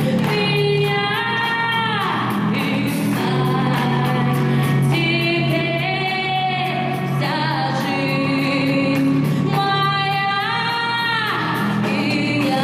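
A woman singing live into a microphone over a musical accompaniment with a steady beat, holding long notes that bend downward at the ends of phrases, twice.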